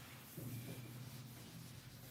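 Faint rubbing of a felt whiteboard eraser wiped across the board, erasing marker writing.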